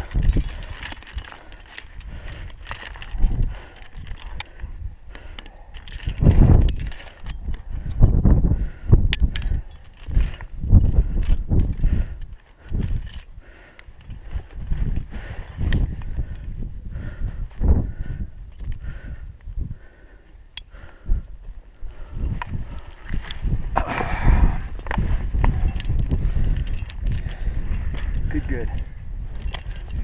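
Wind buffeting the microphone in uneven gusts, with scattered sharp clinks of metal climbing gear (carabiners, belay device and anchor chain) as rope is handled at the anchor.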